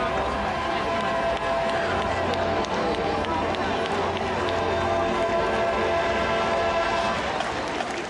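Marching band brass holding long, sustained chords over a low rumble that drops away about five seconds in, with crowd chatter from the stands.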